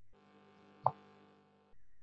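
A faint steady hum with one short, sharp pop a little under a second in. The hum cuts off shortly before the end.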